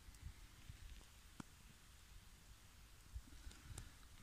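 Near silence: faint hiss with a few soft clicks, one about a second and a half in and a few more near the end.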